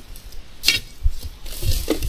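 Dry brush and briars crackling, with a couple of sharp snaps, one well before the middle and one near the end, and some low thumps.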